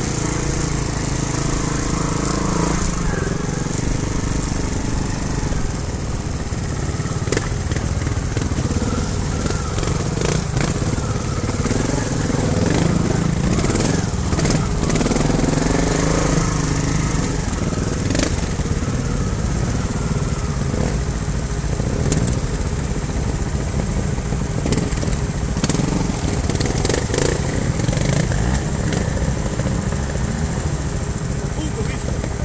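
Trials motorcycle engine at low revs, picking its way up a rocky trail. The revs rise and fall with short throttle blips, and sharp knocks and rattles come from the bike over the rocks.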